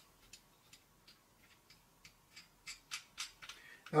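Faint, irregular clicks and ticks from a Coteca hand pop-rivet gun being handled and worked, about a dozen in all, a little louder around three seconds in.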